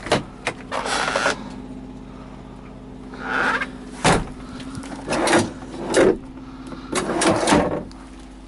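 Plastic storage cabinet doors and compartments in a semi truck's sleeper cab being handled, opened and shut: a string of sharp knocks and clicks with short rustles between them, over a steady low hum.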